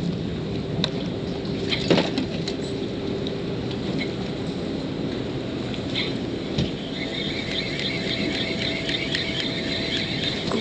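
Small clicks and knocks of a spinning reel and line being handled, the loudest about two seconds in, over a steady rush of wind and water. A faint, steady high whine comes in about seven seconds in.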